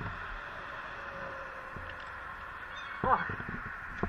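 Motorcycle engine idling steadily as a low hum under steady noise, heard through a bike-mounted camera, with a man's short "oh" about three seconds in.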